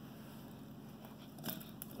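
Faint handling sounds of diced tomatoes being tipped from a small ceramic bowl into a larger bowl of salad, with a few light clicks near the end.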